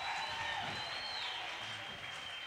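Church congregation applauding, with a few thin high held tones over the clapping, one of them bending upward about a second in.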